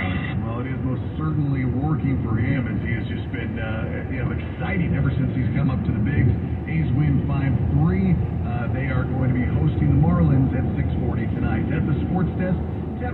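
Talk radio speech playing through the car's speakers, heard inside the cabin over steady road noise.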